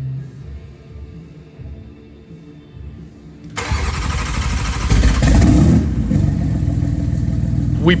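A freshly rebuilt BMW S58 twin-turbo inline-six, with new rods and pistons, cranking and firing up about three and a half seconds in on its first start after the rebuild, then running loud and steady.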